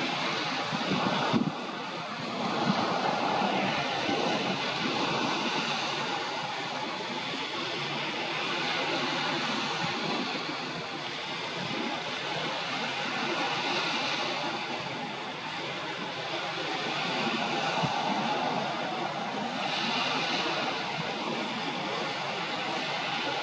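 Steady rushing of wind and water by the shore, slowly swelling and easing, with one sharp click about a second and a half in.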